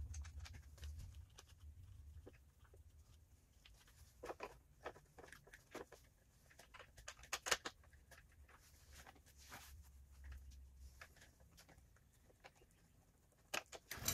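Faint, scattered clicks and light taps of hand work: a plastic tool tube and bolt being fitted to a stainless-steel bracket on a motorcycle, with a small cluster of louder clicks about halfway through. A low steady hum lies under it.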